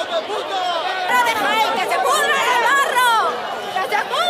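A crowd shouting angrily over one another, several raised voices at once. They yell demands for help and insults such as '¡Queremos ayuda!' and '¡Que se pudran en el barro!'.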